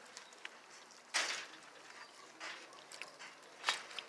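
Goats crowding and feeding close by, with three short bursts of noise about a second apart over faint rustling; no bleating.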